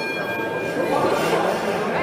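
A boxing ring bell rings out from a single strike, fading away over about a second and a half, the signal for the round to begin. Spectators' voices murmur in the background.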